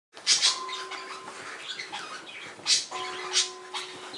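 A dachshund scrabbling and scuffling on a bed sheet in rough play, with several short, sharp rustling bursts of paws and hands on the covers. A faint steady hum comes and goes underneath.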